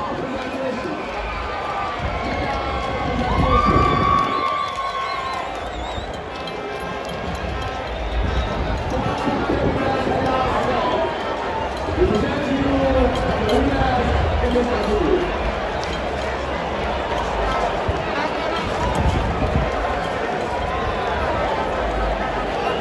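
Stadium crowd in a grandstand: a steady hubbub of many voices talking and calling out, with music playing in the background.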